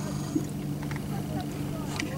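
Fishing boat's motor running with a steady low hum.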